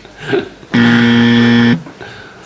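An edited-in buzzer sound effect: one flat, low buzz lasting about a second that starts and stops abruptly, the game-show signal that a contestant is out.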